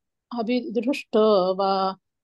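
A woman chanting a Sanskrit verse in a melodic recitation, syllables held on long, steady notes, with a brief pause at the start and another about a second in.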